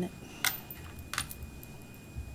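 Two short, sharp clicks about three-quarters of a second apart, the first the louder, from small objects being handled near a microphone.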